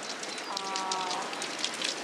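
A large pack of cross-country skiers skating in freestyle technique: poles and skis clatter on the snow as a dense, rapid patter of small clicks over a steady hiss.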